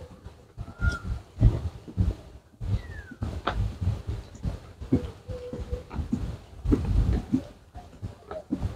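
Footsteps in rubber boots on a grassy, overgrown path, an irregular run of soft thuds. A few brief animal calls break in: a short high note about a second in, a falling call about three seconds in and a held call around five seconds in.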